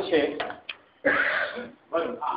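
A man's voice speaking in short phrases, with a brief pause about half a second in that holds two small clicks.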